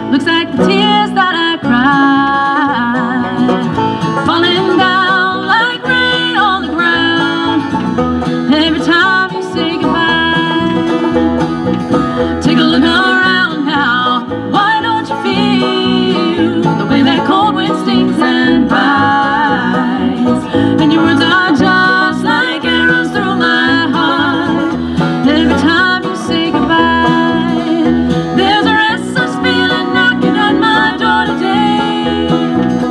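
A live bluegrass band playing: banjo picking over acoustic and electric guitar, with vocals singing over it.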